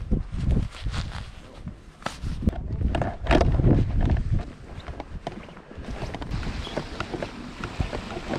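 Footsteps of a person walking on a wet, muddy path, irregular scuffs and knocks, with wind rumbling on the microphone.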